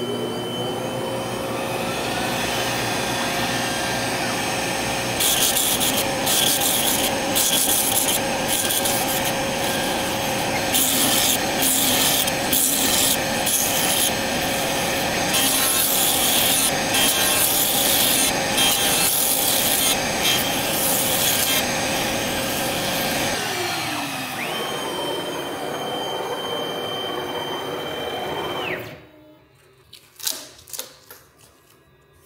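CNC router spindle running with a steady whine while its bit mills a clear acrylic sheet, with repeated bursts of harsh cutting noise through the middle. Toward the end the spindle winds down in falling pitch, then the sound stops abruptly.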